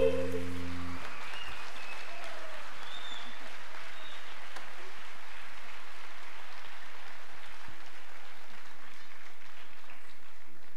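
The band's last held chord dies away about a second in, then an audience applauds steadily.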